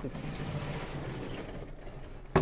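A vertically sliding chalkboard panel being pushed up in its frame, giving a steady mechanical rolling noise as it travels.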